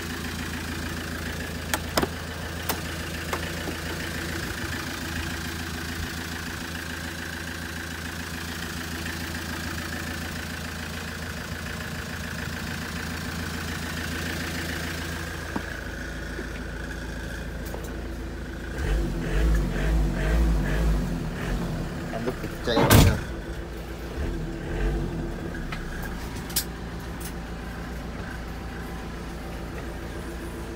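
2005 Ford Transit van's diesel engine idling steadily. Some dull thumps come past the middle, then one sharp knock.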